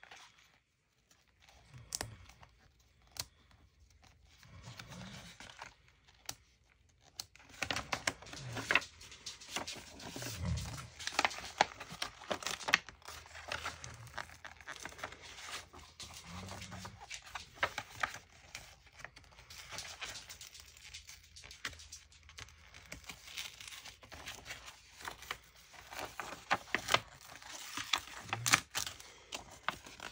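Paper pages being cut and torn out of a hardback book and handled, with rustling and crisp crackles. Only a few isolated clicks come in the first seven seconds or so, then the crackling gets busy.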